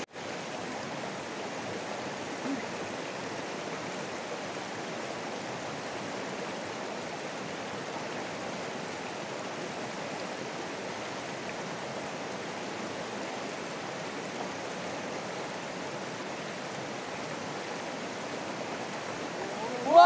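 Shallow river rushing over rocks: a steady, even sound of flowing water.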